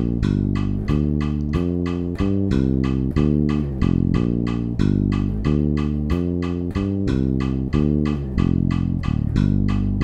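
Electric bass guitar playing a line of single notes from the G minor pentatonic scale in 7/8, felt against a quarter-note pulse, with notes changing every quarter to half second. A steady ticking runs behind it about four times a second.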